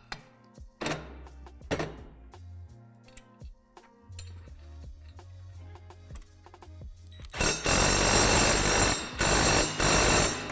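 Cordless drill-driver running under load, tightening a bolt through the steel extension-arm bracket, in two loud runs: about two seconds starting a little past halfway, a short break, then again at the end. A few light metal clicks of hardware come earlier.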